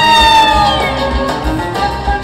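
Live Kabyle folk music from a stage band with keyboard and bass guitar. A long, wavering held note slides down and fades out about a second in, and lower notes carry on over a steady beat.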